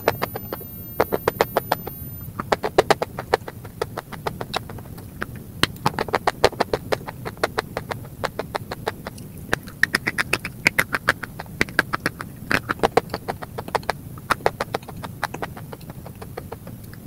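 Crumbly white chalk-like blocks being bitten and chewed close to the microphone: runs of sharp crunches, several a second, in clusters broken by short pauses.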